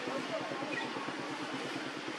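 Steady outdoor background noise with indistinct, distant chatter running under it; no single sound stands out.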